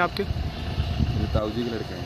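Short fragments of a man's speech over a low outdoor rumble, which is strongest in the first second.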